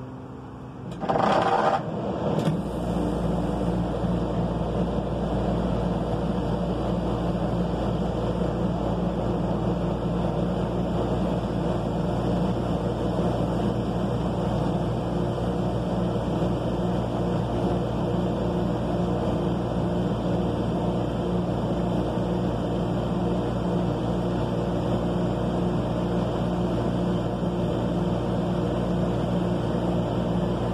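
1991 Fedders 18,000 BTU air conditioner starting up after a year unused: a short loud burst about a second in, then the compressor and fan settle into a steady, noisy low hum.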